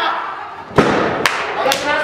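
A wrestler's body hitting the ring canvas with one loud thud about a second in, followed by two sharper slaps.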